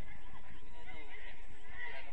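Players shouting and calling out to one another during football play: short rising and falling calls over a steady low background noise.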